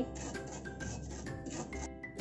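Background music over the scratchy rubbing and small ticks of sesame and poppy seeds being scraped from a bowl into a non-stick frying pan with a spoon.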